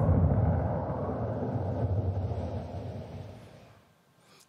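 Closing low rumble of a TV show's intro theme, a deep bass hit that fades out steadily over about four seconds to near silence.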